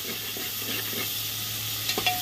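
Sliced onions sizzling in oil in an aluminium pressure cooker as a slotted metal spatula stirs them, with a sharp click of the spatula against the pot near the end.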